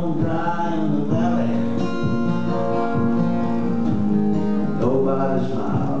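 A man singing a folk song to his own strummed acoustic guitar. The guitar carries most of the middle between sung lines, and the voice comes back near the end.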